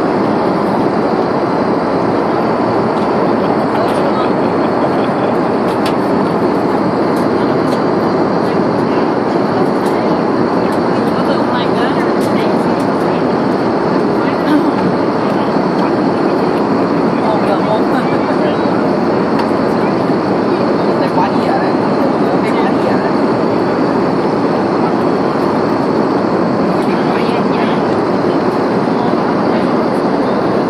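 Airliner cabin noise in flight: a loud, steady, even rush of engine and airflow noise that does not change, with occasional faint clicks over it.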